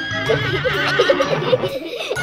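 An electronic unicorn toy gives a wavering, horse-like whinny over background music.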